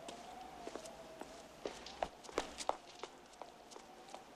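Footsteps on street pavement, a handful of sharp steps clustered between about one and a half and three seconds in, over a faint steady tone.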